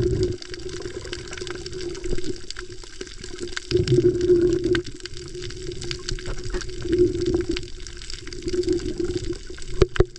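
Muffled water noise picked up by a camera held underwater: a steady low wash that swells several times, loudest about four seconds in, with many faint clicks scattered through it.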